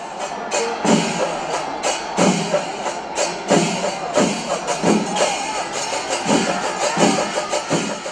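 Kerala temple percussion ensemble (melam) playing: chenda drums and ilathalam cymbals keep up a dense beat while kombu horns blow calls that swoop up and down in pitch, again and again.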